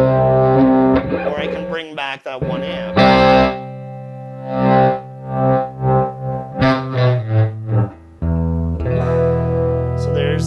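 Electric guitar played through a Headrush pedalboard's amp models, the foot pedal blending a high-gain '92 Tread Modern amp model with a clean Princeton amp model. Sustained chords and a few quick strums give way to a run of single picked notes, and a fresh chord rings out near the end.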